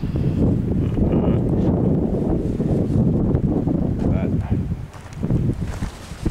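Wind buffeting the camera's microphone: a dense low rumble that thins out about four seconds in.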